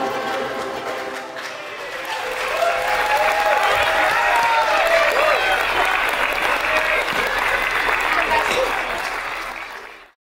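Audience applauding loudly, with whoops and calling voices over the clapping, as the song's last held chord dies away in the first second or so. The clapping fades near the end and then cuts off.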